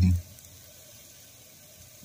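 Faint, steady sizzle of diced tomatoes frying in an electric hot pot.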